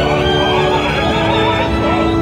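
Opera orchestra playing loudly with long held notes, and a singing voice with vibrato above it.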